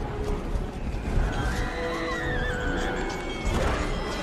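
Film battle soundtrack: music with held tones over a dense, deep rumble, and one long, wavering high-pitched cry about a second and a half in.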